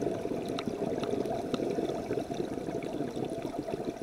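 Scuba diver's exhaled air bubbling out of the regulator in a long, dense gurgle, heard underwater and muffled, with most of its sound low down.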